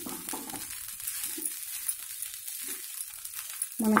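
Spatula stirring and scraping rice and potato pieces around a nonstick frying pan as they fry: a steady sizzle with irregular scrapes.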